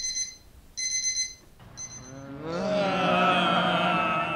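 Electronic alarm clock beeping three times, about a second apart, then a group of voices joining in one long held call, louder than the beeps.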